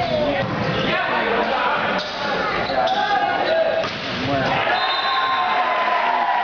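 A volleyball being struck and bouncing on a gym's hardwood floor during a rally, with several players and spectators shouting and calling out over it.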